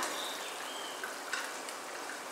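Pot of chicken in broth simmering uncovered on a gas stove: a steady, even hiss, with two faint short high tones in the first second.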